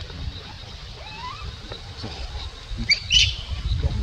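Infant macaque calling: a short rising whimper about a second in, then a brief high squeal just after three seconds. A low rumble runs underneath.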